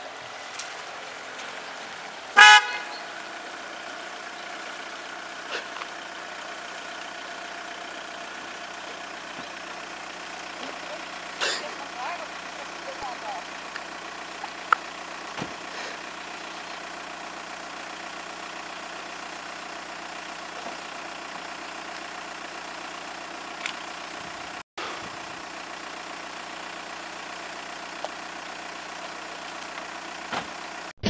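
A car horn gives one short honk about two and a half seconds in. Under it and after it there is a steady hiss of outdoor background.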